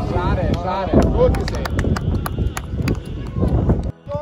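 Voices calling out over a steady low rumble, with a run of sharp clicks through the second half. The sound cuts off suddenly at the end.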